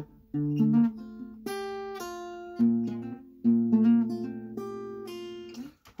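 Acoustic guitar with a capo on the first fret playing the song's chord passage: five chords struck about a second apart, each left to ring, fading out near the end.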